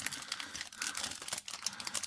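Foil booster-pack wrapper crinkling in the hand, a quick run of small crackles.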